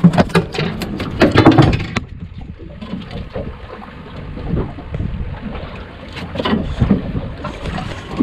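A quick run of knocks and thumps in the first two seconds, then steady wind and sea noise on an open boat deck, with a few more light knocks later on.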